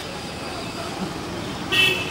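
A vehicle horn gives one short toot near the end, over a low background of outdoor street noise and murmured voices.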